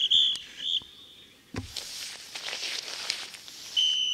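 A referee's whistle: three short blasts in the first second, then one longer blast near the end. A dull thump about one and a half seconds in.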